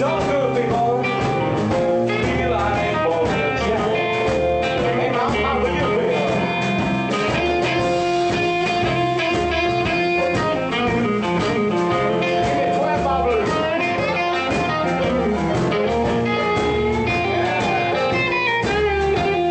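Live blues band playing an instrumental passage: electric guitar, stage piano, double bass and drums.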